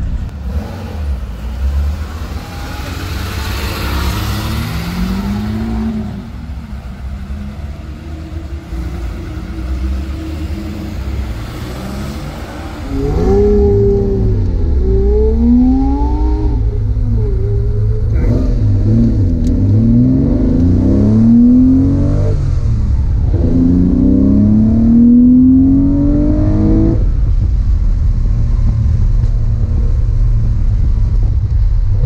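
Classic Porsche 911's engine heard from inside the cabin, running quietly at first. About thirteen seconds in it gets much louder and revs up in about four rising sweeps as the car accelerates hard through the gears.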